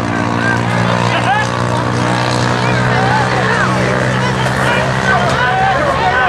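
A motor vehicle's engine running at a steady pitch, fading out after about four seconds, under spectators' voices and shouts.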